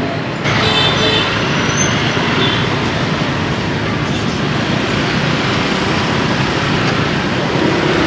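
Busy city street traffic: a steady, dense wash of vehicle engines and road noise.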